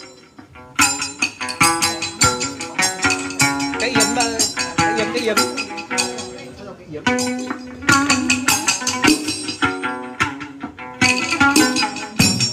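Chầu văn ritual music: a plucked moon lute (đàn nguyệt) in a steady rhythm with wooden clappers and drum, and a voice singing the văn chant over it.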